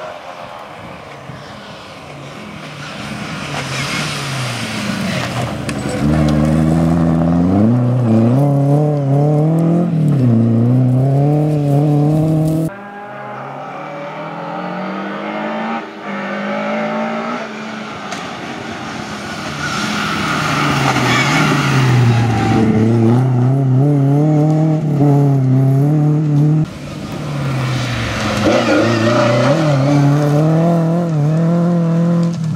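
Lada VFTS rally car's four-cylinder engine revving hard through the gears at racing speed, its pitch climbing and dropping back with each shift. It comes as three separate passes, with abrupt cuts about a third of the way in and near the end.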